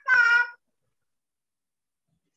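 A high, sing-song voice draws out the last syllable of a greeting to a child over a video call. It lasts about half a second at the start, then the line goes silent.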